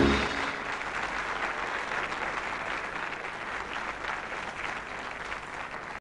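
Audience applauding, starting as the orchestra's final chord ends and slowly easing off.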